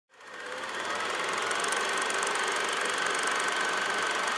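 Film projector sound effect: a steady mechanical whirring rattle that fades in over the first half second and then holds even.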